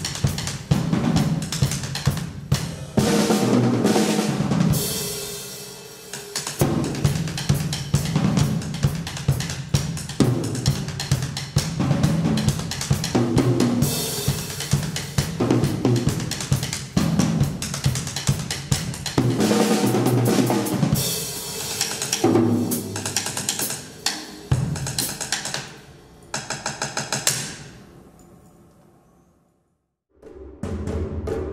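Solo on a TAMA drum kit with Sabian cymbals: fast snare, bass drum and tom strokes in shifting patterns, with rolls and washes of cymbal. The playing dies away to near silence near the end.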